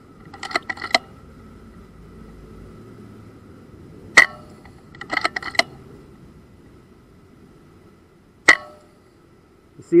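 Edgun Wildcat precharged air rifle firing two shots about four seconds apart, each a sharp crack with a brief ring. A quick run of clicks comes near the start and again about a second after the first shot.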